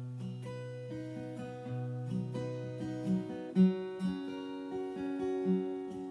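Acoustic guitar playing an instrumental passage of chords, a low bass note ringing under them for the first three seconds, then sharper strums with a strong accent about three and a half seconds in.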